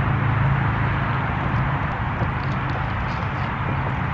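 Church bells ringing for the hour, heard as a steady low ringing over background noise.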